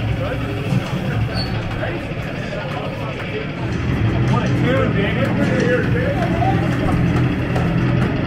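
Loud arena din: a steady low rumble with indistinct voices over it, with no clear words.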